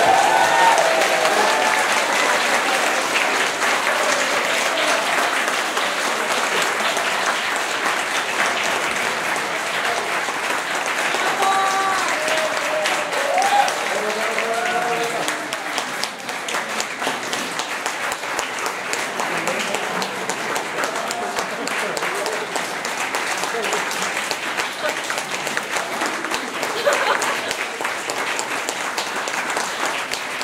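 Audience applauding steadily after a violin and piano performance ends, with voices calling out over the clapping at the start and again about twelve seconds in.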